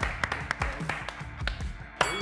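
A few people clapping in quick, irregular claps over background music.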